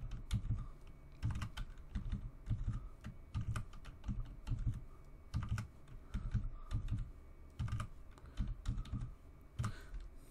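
Typing on a computer keyboard: irregular keystrokes, some in quick runs, with short pauses between.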